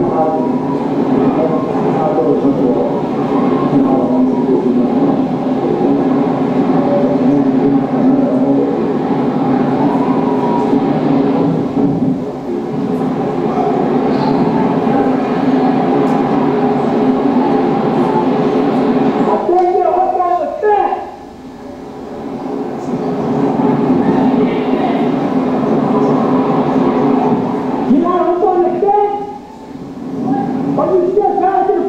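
Hurricane Katrina's winds blowing in a loud, steady rush on a home camcorder recording played back over a hall's speakers. Brief voices come through about two-thirds of the way in and again near the end.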